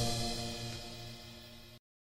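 The final held chord of a choral piece dying away, fading steadily and then cutting off to silence near the end.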